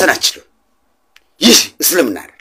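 A man's voice in short, loud, abrupt bursts: one at the start and two more in quick succession about one and a half seconds in, with silent gaps between.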